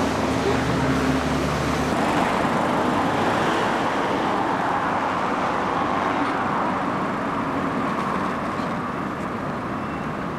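Steady street traffic noise from passing cars. A low vehicle engine hum stops about two seconds in.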